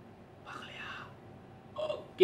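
A man's brief whispered sound, soft and without voice, about half a second in. His voiced speech starts again just before the end.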